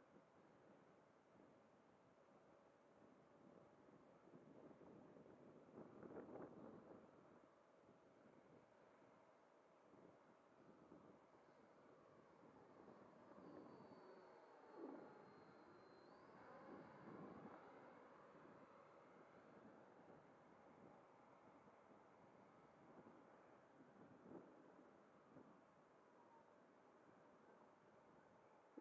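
Faint whine of an 80 mm electric ducted-fan RC jet in flight, swelling and fading several times, loudest as it passes overhead about halfway through.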